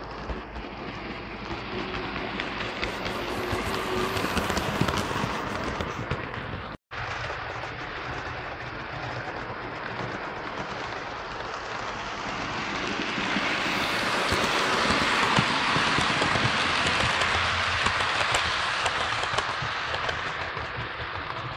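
OO gauge model train running on the layout's track: a steady rushing rumble of wheels and motor that swells twice and is loudest in the second half. The sound cuts out for a moment about seven seconds in.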